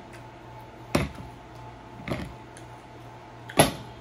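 Three short, sharp knocks, about a second in, just after two seconds, and the loudest near the end, the last as a hand reaches up to the camera; under them the steady hum of an electric fan.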